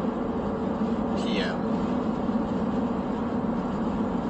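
Steady engine and road drone heard inside a moving car's cabin, with one short falling high-pitched sound about a second in.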